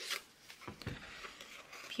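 Faint handling of a paper sticker sheet being cut and readied for peeling: a few soft clicks and rustles.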